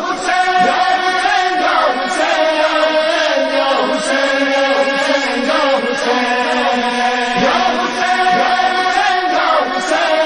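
Chorus of several voices chanting in long, held notes: the vocal backing of a noha, with no instruments.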